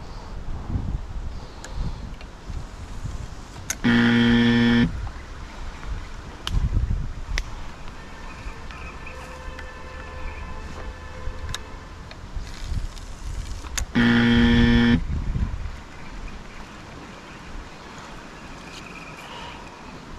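Two identical loud, flat, buzzing horn blasts, each about a second long and about ten seconds apart, over wind rumbling on the microphone.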